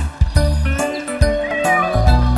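Bouncy children's song backing music with a steady beat. Near the end comes a cartoon cat's meow, a short falling call.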